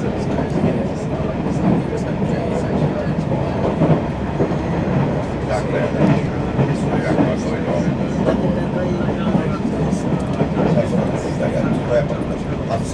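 Steady running noise heard inside a commuter train carriage as it travels, wheels rumbling on the rails, with scattered faint clicks.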